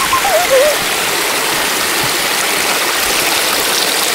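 Shallow mountain creek rushing over rocks close by, a loud, steady wash of water. A short wavering vocal sound is heard in the first second.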